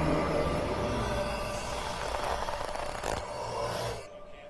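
Eerie horror film score dying away, its held tones thinning into a hiss, with a faint knock about three seconds in. It cuts off suddenly at the end.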